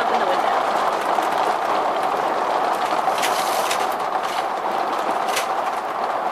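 Heavy rain falling on an RV, heard from inside as a dense, steady, pretty loud hiss.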